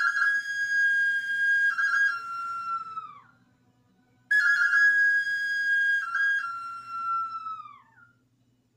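A small hand-held whistle blown in two long notes with a short pause between. Each note holds one pitch, drops a step, then slides down in pitch as it dies away.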